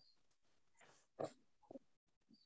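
Near silence: a pause between spoken sentences, broken by one faint, short breath-like sound about a second in.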